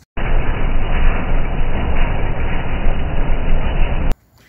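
Toro ProCore 648 greens aerifier running with its tines punching into the turf: loud, steady mechanical noise that cuts in and out abruptly.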